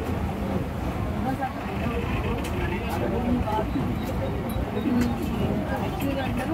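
Ferry boat's engine idling at the jetty with a low, steady rumble, under the chatter of passengers.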